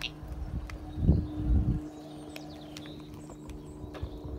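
A low rumbling thump on the microphone about a second in, then faint outdoor background with a few thin, high bird chirps.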